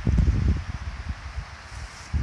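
Wind buffeting the microphone: a low, gusty rumble, strongest in the first half-second, then easing off.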